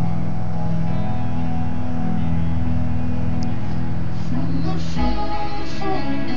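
Instrumental stretch of a guitar-backed song, with no singing; the held low notes change to a new chord about five seconds in.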